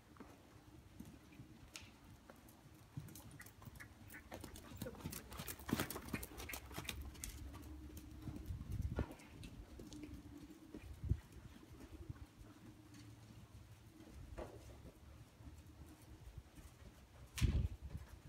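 Horse hooves on soft sand arena footing: muffled, irregular hoofbeats of ridden horses, with a scatter of sharper clicks in the middle and one loud thump near the end.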